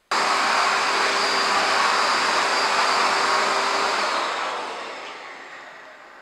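Numatic NDD 900A vacuum extractor running: a steady rush of air with a constant motor hum and whine. It starts abruptly and fades away over the last two seconds.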